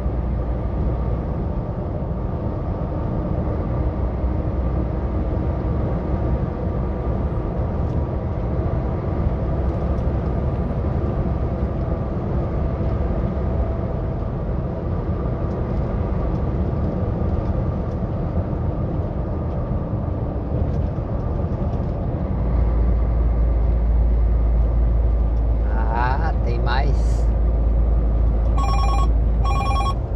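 Steady engine and road noise inside a moving truck's cab, the low rumble growing louder about three-quarters of the way through. Near the end a mobile phone rings.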